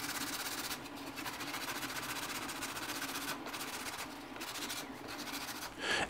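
Sanding stick rasping back and forth in quick strokes against the edge of a 2 mm styrene sheet, sanding its overhang flush with the plastic part underneath.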